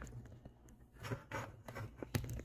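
Faint handling noise of a phone being moved and turned around in the hand: soft rubbing and scraping of hand and sleeve against the phone, a little stronger in the second half.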